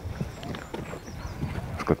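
Footsteps crunching on a leaf-strewn path dusted with frozen graupel: a quick, irregular run of short crunches, several a second.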